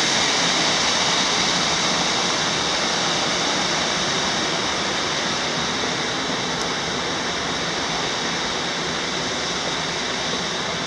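Creek water rushing over small rock ledges and cascades, a steady hiss that gradually grows a little fainter.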